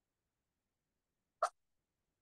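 Near silence, with one brief click about one and a half seconds in.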